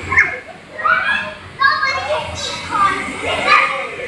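Young children's voices, talking and calling out while playing.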